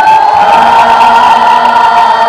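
Live band music with one long, steady high note held through, over a cheering and shouting crowd.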